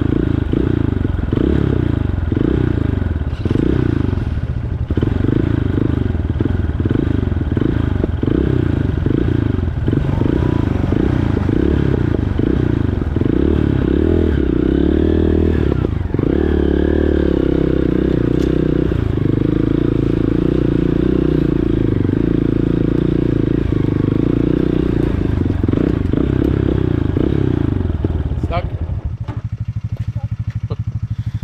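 Dirt bike engine running at low trail speed through mud. For the first half the engine note surges and falls about twice a second with the throttle, then it holds a steadier pitch before easing off near the end.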